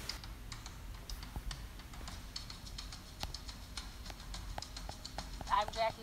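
Irregular light knocks and clicks of apples bumping against one another and the table as they are handled, over a faint low hum. A woman's voice starts near the end.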